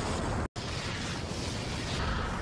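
A steady rushing, rumbling energy sound effect from the anime's battle soundtrack, broken by a brief dropout about half a second in.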